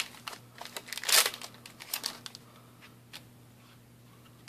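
Foil booster-pack wrapper crinkling and being torn open by hand, with the loudest rip about a second in, then a few light crackles and clicks that thin out.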